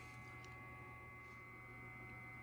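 Near silence: a faint steady electrical hum of room tone.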